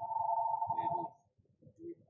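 A steady electronic tone of two pitches sounding together, cutting off about a second in, with faint talk underneath.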